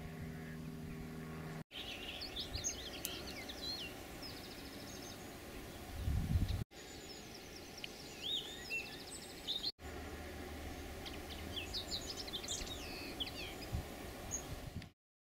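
Several songbirds singing, with short chirps and quick rattling trills, over a steady outdoor background. The sound drops out briefly three times. A low steady hum runs for the first couple of seconds, and a brief low rumble comes about six seconds in.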